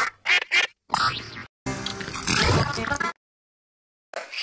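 Chopped, distorted cartoon-logo music and squawking cartoon sound effects in three short bursts, the first broken into quick stabs, then cut off to silence for about the last second.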